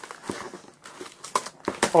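Kitchen knife cutting through plastic packing tape on a cardboard box, then the flaps being pulled open: a run of crinkling, crackling tape and cardboard noises.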